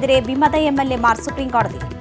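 A voice over background music, ending about a second and a half in, after which the music carries on with sharp percussive beats.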